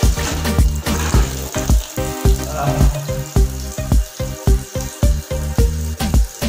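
Background music with a steady drum beat and bass line, over the hiss of water pouring from a wall tap onto a tiled floor.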